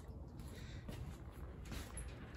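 Quiet room tone: a low, steady background hiss with no engine running.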